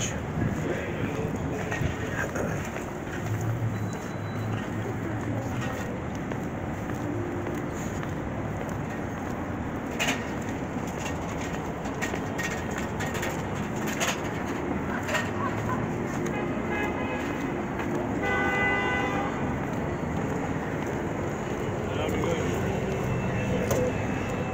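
Steady city street traffic noise with passers-by's voices, and a vehicle horn sounding briefly about three quarters of the way through.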